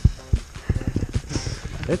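Handling and movement noise on the camera's microphone: two heavy, dull thumps, then a quick run of low knocks and rumble as the camera is jostled.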